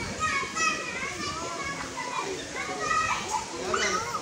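Children's voices: high-pitched, excited chatter and calls over a busy background of other voices.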